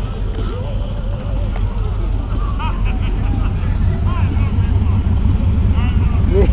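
Low, steady rumble of car engines rolling past at low speed. It grows louder toward the end as a Corvette draws close, with scattered crowd voices over it.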